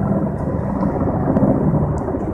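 A formation of military helicopters flying past at a distance, their rotors and engines making a steady, low rumbling drone.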